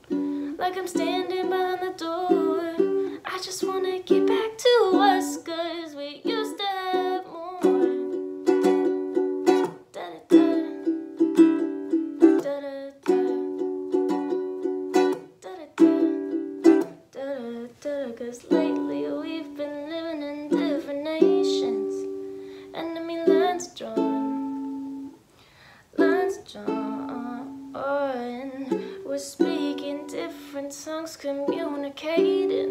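A woman singing while strumming a ukulele, with a brief pause in the playing about 25 seconds in.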